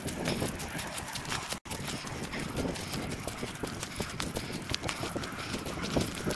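Footsteps crunching through dry leaf litter and twigs on a forest trail, sped up fourfold so the steps run together into a fast, irregular patter of crackles. The sound breaks off sharply for an instant about one and a half seconds in.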